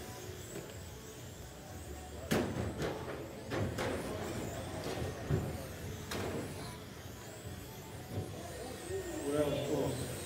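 Radio-controlled electric touring cars racing on an indoor carpet track, under a steady background hum, with several sharp knocks between about two and six seconds in and faint voices near the end.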